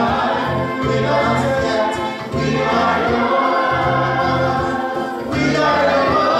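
Choir singing church music over a bass line that moves in steady half-second steps, with short breaks between phrases about two and five seconds in.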